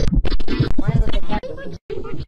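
Chopped, pitch-shifted audio of an effects remix: stuttering music mixed with warped voice fragments, with wavering pitch in the middle and sudden cut-outs near the end.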